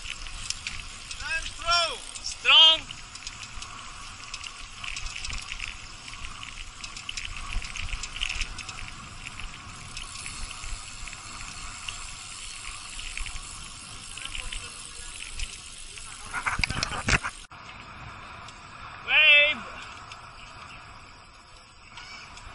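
Wind rushing over the microphone and tyre noise from a road bicycle rolling along a concrete highway, with a few short voice calls about two seconds in and again near the end. The noise swells, then cuts off abruptly about seventeen seconds in, and a quieter stretch of riding follows.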